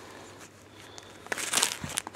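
Plastic comic-book bags crinkling as bagged comics are lifted and flipped through by hand, in short bursts starting about a second and a half in after a quiet start.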